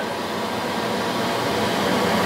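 Steady whirring running noise of a Monarch 10EE lathe, with a faint steady tone over it.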